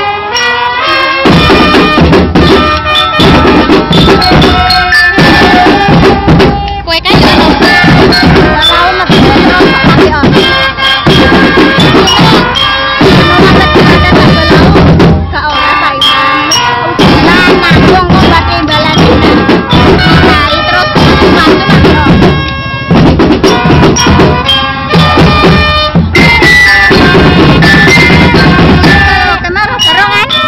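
Marching band playing loudly, about a second in: bass drums and snare drums beating under pitched melody from marching bells (glockenspiel) and trumpets.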